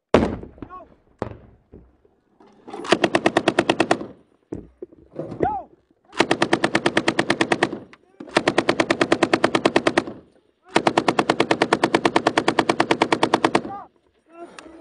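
A belt-fed machine gun fires close by in four long bursts at about ten to twelve rounds a second. The last and longest burst runs about three seconds. A sharp single shot and a few scattered cracks come before the first burst.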